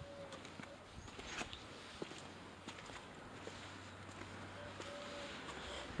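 Faint outdoor ambience with a few soft footsteps on a paved garden path and a low steady hum.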